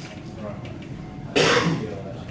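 A single loud cough about one and a half seconds in, over the low hum of the room.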